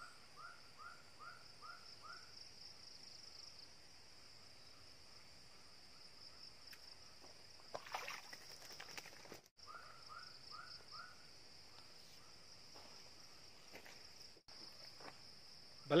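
Faint outdoor ambience: insects keep up a steady high-pitched drone, and an animal's run of short repeated call notes, about three a second, comes at the start and again around ten seconds in. A brief rustle sounds about eight seconds in.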